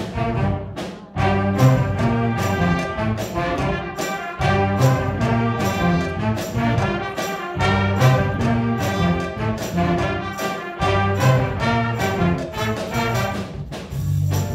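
Live jazz-rock band playing: trumpets, trombones and tenor saxophones over electric bass guitar and a drum kit keeping a steady beat, with a short break in the music about a second in.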